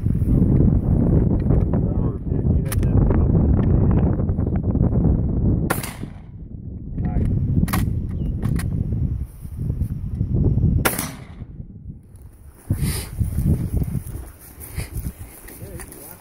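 Several sharp gunshots on a shooting range, spaced one to three seconds apart, over a heavy low rumble that is loudest in the first few seconds.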